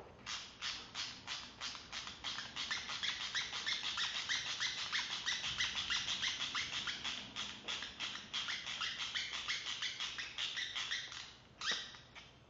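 A small hand tool turning an M4 screw on a 3D printer's idler bracket: rapid, even, squeaky clicks, about four a second, stopping about a second before the end.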